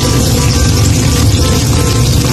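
Oil sizzling steadily around chicken patties frying in a nonstick pan over medium heat, with background music underneath.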